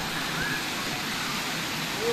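Steady rushing and splashing of swimming-pool water.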